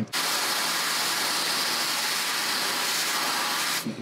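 Dry-ice blaster firing a steady, high hissing jet of compressed air and dry-ice pellets for a few seconds, starting abruptly and cutting off just before the end.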